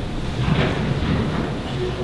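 A congregation sitting down: a steady rumble of shuffling, rustling and seats taking weight, with no single distinct knock.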